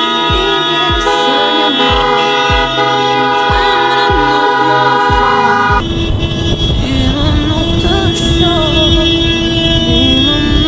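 Car horns honking over music with a steady beat. About six seconds in, the sound changes to the low rumble of a moving car, with horns held and music still playing.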